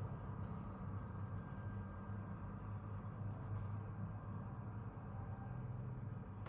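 Faint, steady drone of a harvesting machine's engine working in a field, a low hum that swells and eases slightly.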